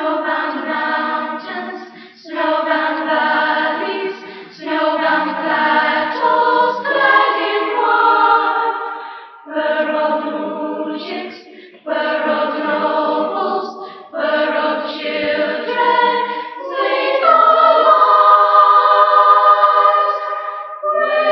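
Children's choir singing in short phrases broken by brief pauses, ending on a long held chord. The treble is cut off, as on an old cassette tape recording.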